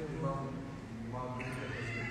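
Speech: a man's voice addressing a gathering, with some drawn-out held tones.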